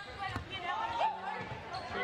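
Basketball being dribbled on a hardwood gym floor, with voices calling out in the large hall.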